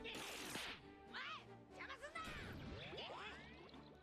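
Faint anime episode audio: soundtrack music under fight sound effects. A short noisy burst at the start, then several whistling sweeps that rise and fall in pitch.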